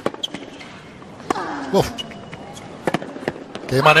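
A tennis rally on a hard court: a series of sharp strikes of racket on ball, with a player's grunt on a shot about a second and a half in.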